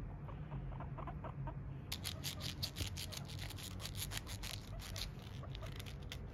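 Guinea pigs making short, soft clucking chuts as they follow for a treat. From about two seconds in there is rapid crinkly rustling.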